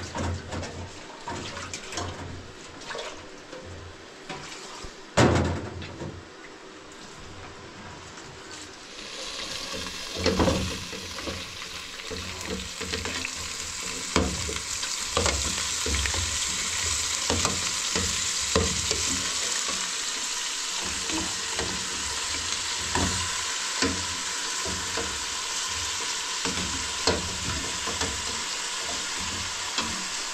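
Knocks and clatter of a pot being handled, then meat and onions sizzling as they fry in a pot on a gas stove. The sizzle builds from about a third of the way in and stays steady, with the metal ladle knocking and scraping against the pot as it is stirred.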